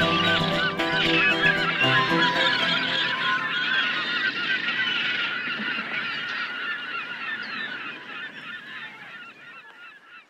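A flock of birds calling, many short squawks overlapping densely, fading away steadily until almost gone at the end.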